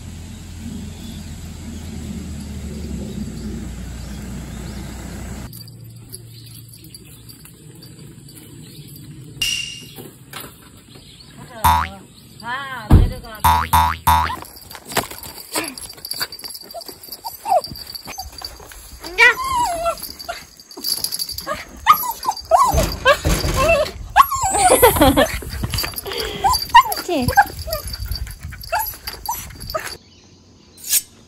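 Dogs yipping and growling as they play tug-of-war over a rope toy, with springy boing sounds around the middle. A steady low rumble fills the first few seconds before it cuts off.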